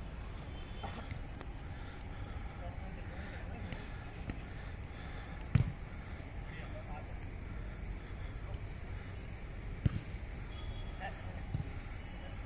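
A football kicked twice, two sharp thumps about four seconds apart, over faint distant voices.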